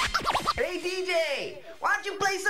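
Hip-hop turntable scratching of a vocal sample, the record pushed back and forth so its pitch sweeps up and down in quick arcs, with the beat's bass and drums dropped out underneath.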